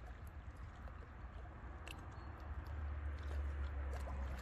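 Small waves lapping and splashing against shoreline rocks: a steady wash of water with scattered small splashes and ticks, over a low rumble that grows louder about two-thirds of the way through.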